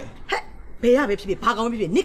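Speech only: a man and a woman talking in Burmese.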